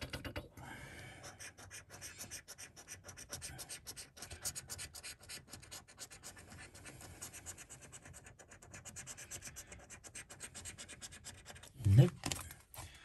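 A coin scratching the scratch-off coating from a Money Spinner scratchcard in quick, repeated strokes, with a louder thump right at the end.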